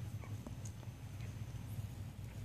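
Newborn Labradoodle puppies nursing at their mother's teats: faint scattered suckling clicks and a few tiny brief squeaks, over a low steady hum.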